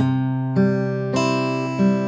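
Steel-string acoustic guitar fingerpicked in a slow arpeggio, a fresh note plucked about every half second over ringing strings. The middle- and ring-finger notes that should sound together are plucked slightly apart: a deliberate example of the scattered, uneven pinch to avoid.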